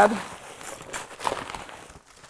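Metal scoop digging into a plastic bag of crushed ice: crunching ice and crinkling plastic, fading off toward the end.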